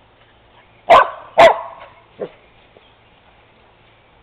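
A dog barking: two loud barks about half a second apart, about a second in, then a softer third bark.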